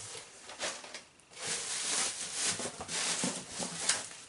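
Bubble wrap and plastic packing crinkling and rustling as the packed box is rummaged through, with a short pause about a second in.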